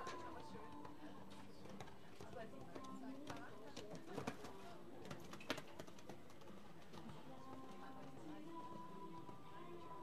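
Indistinct background voices and music, with a few sharp clicks about four to five and a half seconds in.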